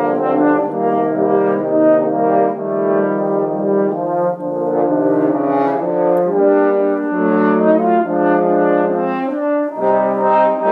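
A French horn quartet playing in harmony: chords of several held notes sounding together, moving from one to the next every second or so, with a short break just before the end.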